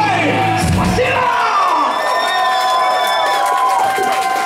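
A live rock band ends a song: the band's final chord cuts off about a second in, and the audience cheers, yells and whoops.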